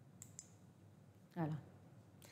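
Two quick, light computer-mouse clicks about a fifth of a second apart. About a second later a woman says one word.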